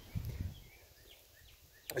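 Faint outdoor woodland ambience: a brief low rumble in the first half second, then near quiet with a few faint, short high chirps.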